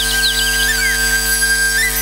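Instrumental passage of a live band: a flute holds a long high melody note with small pitch steps and quick ornamental trills near the start, over a steady keyboard drone.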